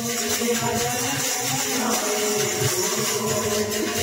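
A pair of kartal, hand-held clappers fitted with small metal jingles, shaken and clapped in a fast continuous jingling rattle, over devotional bhajan music.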